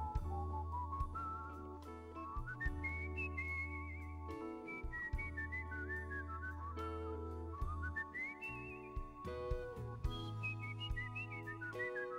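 A whistled melody, high and gliding with vibrato, over sustained organ chords, a held bass line and sparse drum hits from a live rock band.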